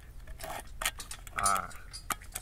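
Handle of a metal spoon prying at the lid of a small metal tin can: a series of short metallic clicks and scrapes, one louder about one and a half seconds in.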